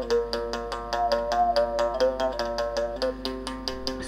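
Moungongo, a Gabonese mouth bow: its string is struck with a stick in a quick, even rhythm of about six or seven strokes a second, and the player's mouth cavity picks out overtones that step up and down into a melody.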